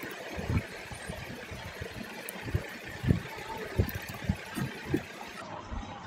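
Computer keyboard keystrokes: irregular single taps over a steady background hiss, as an email address and password are typed.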